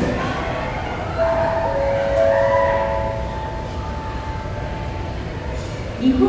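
Airport public-address chime: a few overlapping held tones that come in about a second in and fade out over the next few seconds, over the steady hum of the terminal hall.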